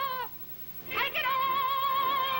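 A woman belting a song with a wide vibrato on an early-1930s film soundtrack. A held high note breaks off, there is a short pause, then her voice scoops up into another long held note.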